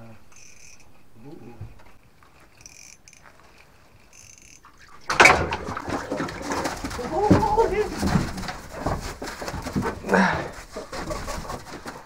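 Quiet shack room tone with a few faint thin squeaks, then about five seconds in a sudden burst of clothing rustle and camera handling as a hooked bass is brought to the ice hole, followed by irregular movement noise and short excited voice sounds.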